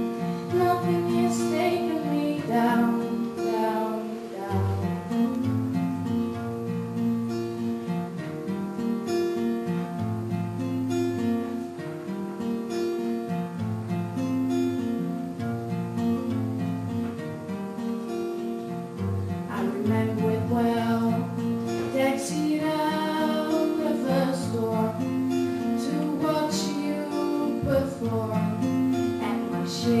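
Acoustic guitar playing an instrumental passage of strummed and plucked chords, played live on stage.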